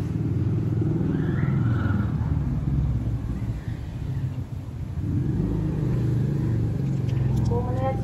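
Strong wind buffeting the microphone: a continuous low rumble that swells and eases.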